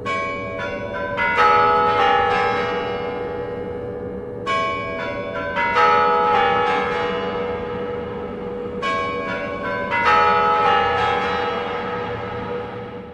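Kremlin chimes, the bells of the Spasskaya Tower clock, playing their chime tune on the hour as the clock stands at twelve. The tune comes in three phrases of several bell notes, about four seconds apart, each left ringing.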